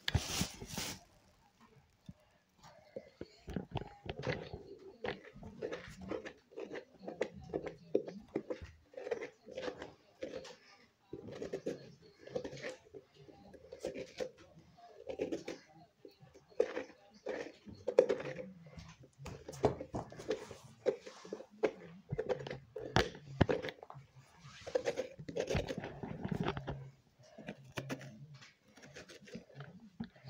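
Hands scraping and scooping the stringy pulp and seeds out of a hollowed pumpkin while a plastic carrier bag crinkles, in a long run of irregular scrapes and rustles.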